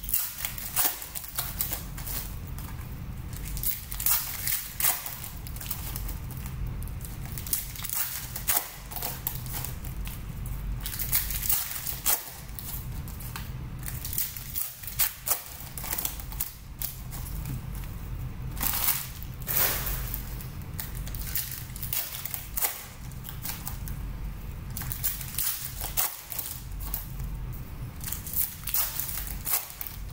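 Foil trading-card packs being torn open and handled, giving irregular crinkling and crackling of the foil wrappers throughout. A steady low hum runs underneath.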